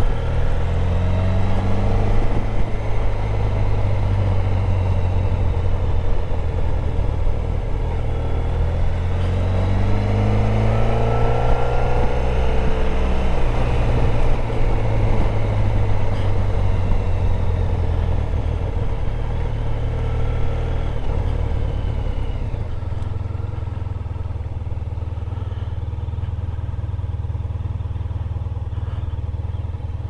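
Honda VFR1200X Crosstourer's V4 engine running on the move, its pitch rising several times as it pulls through the gears. About two-thirds of the way in it eases off and runs lower and steadier as the bike slows.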